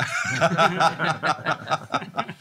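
Laughter: a man chuckling close to the microphone in a run of short, quick pulses, with others at the table laughing along.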